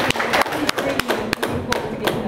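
Audience applause thinning out into scattered single claps, with faint voices underneath.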